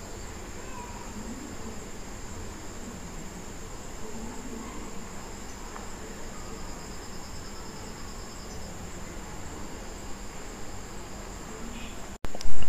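Faint steady background noise, hiss with a low hum, under a continuous thin high-pitched whine. A faint rapid pulsing in the high range comes and goes in the middle.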